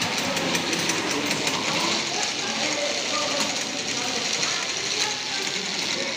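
Crowd babble: many people talking at once, steady throughout, with no single clear voice.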